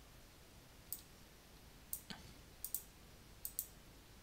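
About six light, sharp clicks from a computer's mouse buttons and keys, two of them in quick pairs, over faint room hiss.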